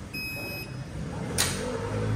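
Contactless card reader on a parking pay machine giving a single steady high-pitched beep, about half a second long, as the card is tapped and read. A sharp click follows about a second and a half in.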